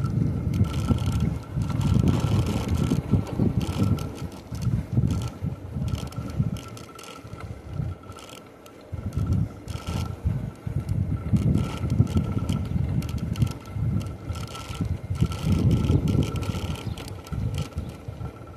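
Wind buffeting the microphone while riding an electric bike at about 13 mph. The rumble rises and falls in gusts and eases off for a few seconds mid-way, with a faint steady high whine underneath.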